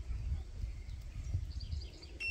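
Low wind rumble on the microphone with small handling knocks as jumper-cable clamps are shifted on the car battery terminals, and faint bird chirps near the end.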